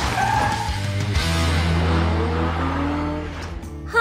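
Background music over the motor of a remote-control toy car driving, its broom attachment pushing popcorn into a dustpan.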